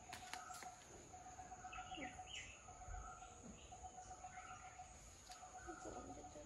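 Quiet outdoor ambience with faint, scattered bird chirps and a faint steady high tone behind them.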